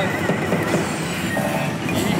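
Loud, dense din of a pachinko and pachislot hall: many machines' electronic sound effects, rattling and clicking together, with the nearby pachislot's tones over it.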